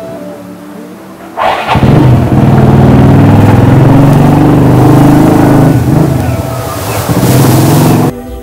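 Motorcycle engine starting up loud and abrupt about a second and a half in, then revving up and down as the bike pulls away carrying a rider and a passenger.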